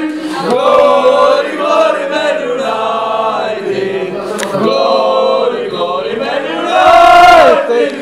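A group of male football supporters singing a chant together in loud, sustained phrases. The loudest phrase comes about seven seconds in.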